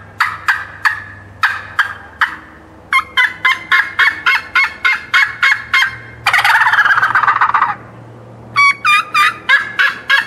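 Woodhaven Ninja Tube turkey tube call blown to imitate a wild turkey. It opens with spaced, sharp single notes, then a fast run of yelps and cuts, a rattling gobble lasting about a second and a half a little past the middle, and more yelping notes near the end.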